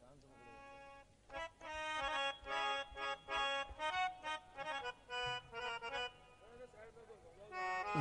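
Harmonium playing a qawwali melody in short phrases of steady reedy notes with brief gaps. It is faint for the first second, then carries the tune.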